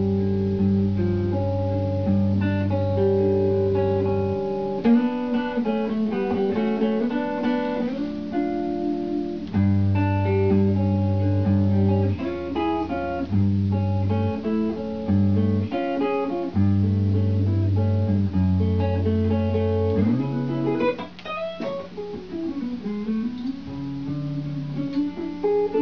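Electric guitar played through effects pedals: picked notes ring and overlap above sustained low notes that drop out and come back. Near the end the pitch slides and bends.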